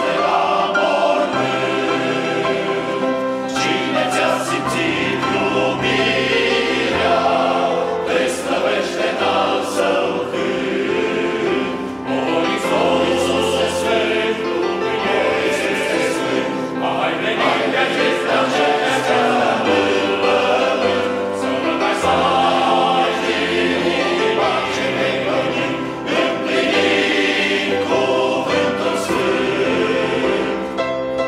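A large men's choir singing a Romanian hymn in several parts, unaccompanied, with low bass notes held under the upper voices.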